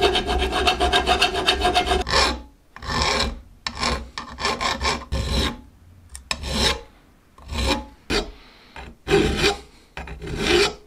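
Hand file rasping across the steel of an adjustable wrench part held in a vise. Quick, closely packed strokes for about the first two seconds, then slower separate strokes about a second apart.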